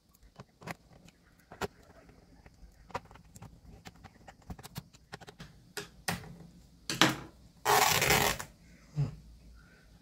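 Small clicks and taps of a screwdriver working the screws of a plastic laptop base cover and of hands handling the case. About seven seconds in comes a sharp click, then a louder noise just under a second long.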